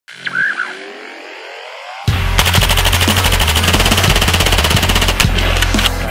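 Intro music opening with a rising sweep, then from about two seconds in a heavy bass beat over a rapid burst of automatic gunfire, with a few separate shots near the end.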